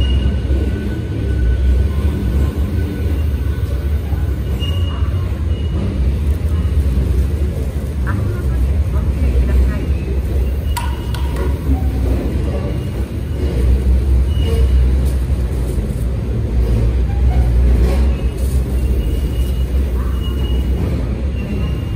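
Steady low rumble and hum at a platform where a Tobu 350-series train stands, with faint voices in the background and a couple of brief clicks about eleven seconds in.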